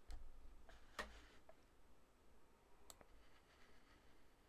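Near silence: faint room tone with a few soft clicks, the clearest about a second in and another near three seconds.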